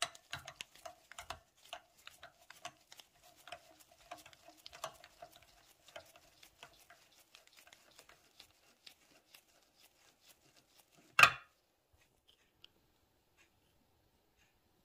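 Steel tap cutting a thread into a hole in an aluminium adapter block: a dense run of small clicks and creaks with a faint steady squeak under them, thinning out after about six seconds. One loud knock about eleven seconds in.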